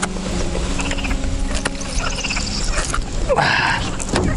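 Wind rumbling on the microphone, with a few light knocks and a short rustling splash a little after three seconds as a hooked pike trailing weed is lifted from the water and grabbed by hand.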